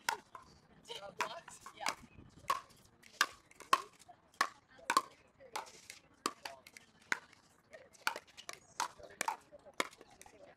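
Pickleball paddles hitting a plastic ball in quick rallies: a run of sharp pocks, about two a second, at uneven loudness, with faint voices under them.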